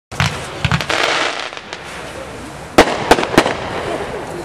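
Galactic Seige 32-shot multi-shot fireworks cake by Cannon firing: sharp bangs of shells bursting, several close together in the first second, then a spell of crackling, then three more bangs about a third of a second apart near the end.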